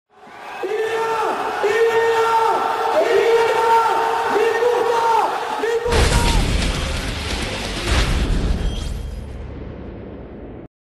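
Produced intro sting. A repeated pitched, voice-like call, each note held and then dropping in pitch, runs for about five seconds. About six seconds in, a sudden heavy boom takes over, with a second hit near eight seconds, dying away.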